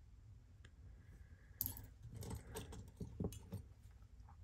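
Metal costume-jewelry brooches clicking and clinking faintly against each other as they are handled in a pile, a run of light clicks starting about one and a half seconds in.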